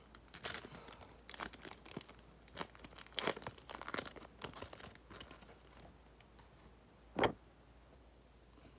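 Foil wrapper of a Panini Select baseball card pack crinkling and tearing in irregular bursts as it is ripped open by hand. One sharp knock near the end is the loudest sound.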